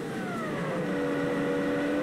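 Car engine heard from inside the cabin while driving, its note falling in the first second, as if easing off the throttle, then holding steady.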